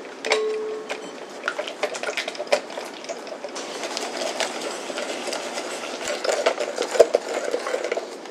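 Wire balloon whisk beating egg yolks and sugar in a glass bowl: a fast, continuous run of clicks and scrapes as the wires strike and drag against the glass, busier and denser in the second half.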